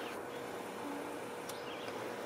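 SCM high-speed air carving tool with a small flame burr running, a steady high hiss, as the burr works the wood of a gun stock.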